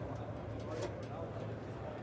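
Exhibition-hall room tone: faint background voices over a steady low hum.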